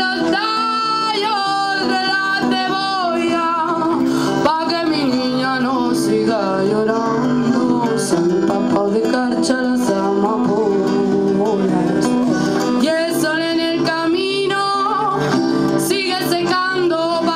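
A small band playing live: a singer over strummed acoustic guitar and electric guitar.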